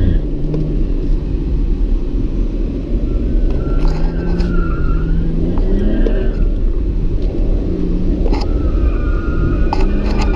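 BMW car engine heard from inside the cabin, its pitch rising and falling as the car is driven hard through tight corners, with the tyres squealing at times.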